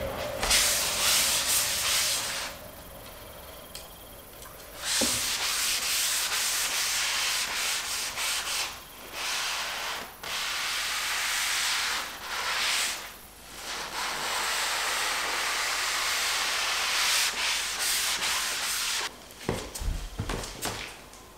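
Scouring sponge scrubbing linseed oil into bare wooden floorboards, in long rubbing strokes with short pauses between them and a longer pause a few seconds in.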